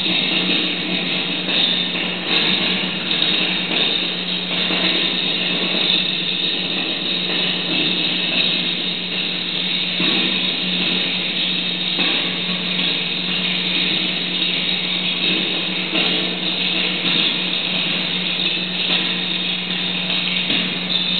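Live experimental noise music: a dense, unbroken wall of electronic noise with a steady low drone underneath.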